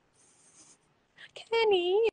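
A woman speaking, after a pause of about a second that holds only a faint, brief hiss.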